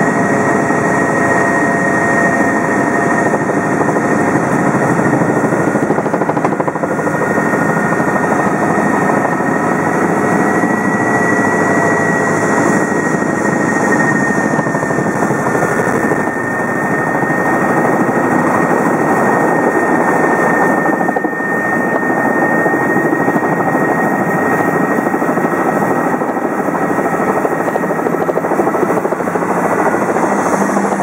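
Helicopter rotor and engine heard from inside the cabin as it comes down and lands on grass: loud, steady running noise with a high, steady whine through it.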